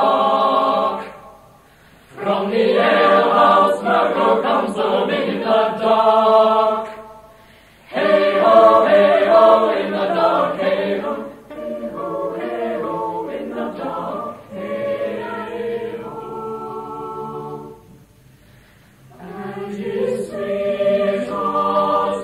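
A choir singing a cappella in phrases, with short breaks between them about a second in, about seven seconds in and near the end, and a quieter passage in the second half.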